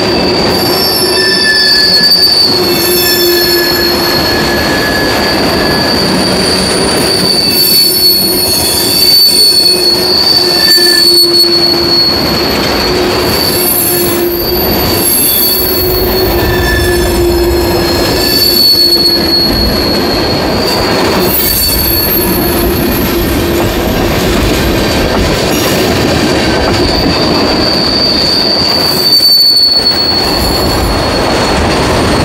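Steel wheels of a freight train of tank cars squealing as they roll through a curve: a steady high-pitched squeal with a lower tone beneath it over the running noise of the cars, and short clacks at irregular intervals as wheels pass over the rail joints.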